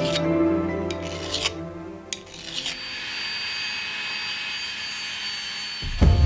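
Hand file rasping against the edge of a brass disc, a few strokes in the first two seconds or so, over background music.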